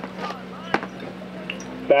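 Faint background voices over a steady low hum, with one sharp click about three-quarters of a second in. Close male commentary begins right at the end.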